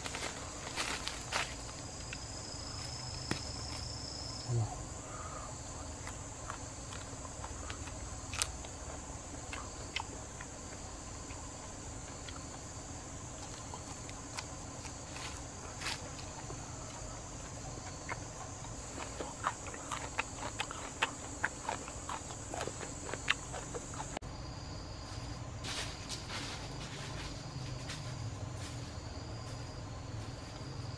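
A steady, high-pitched drone of forest insects that stops abruptly late on, with scattered crackles and rustles of dry palm leaves and twigs underfoot as a barefoot person walks and stoops in the leaf litter.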